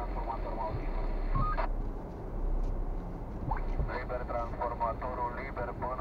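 Muffled voices talking inside a car cabin, with a pause in the middle, over the low steady rumble of the car moving slowly.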